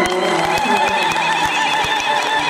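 Ululation from the audience: high warbling trills that repeat several times a second, starting as the orchestra's final notes die away.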